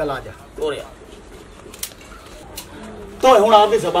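Spoken dialogue: a short phrase at the start and another near the end, with a quieter pause and a couple of faint clicks between.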